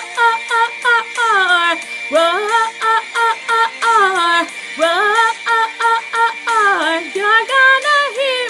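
Woman singing a wordless, gliding vocal line in a pop song over a backing track with a steady beat.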